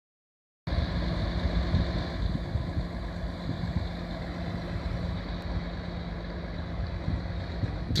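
A heavy truck's diesel engine idling steadily, with a constant low hum. The sound cuts in abruptly just over half a second in.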